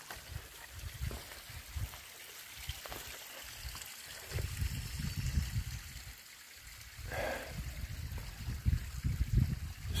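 A small creek trickling over rocks, under an uneven low rumble that is loudest about five seconds in.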